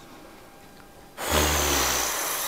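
A rush of air as a rescue breath is blown mouth-to-mouth into a CPR training manikin. It starts about a second in, after a short quieter pause, and lasts over a second.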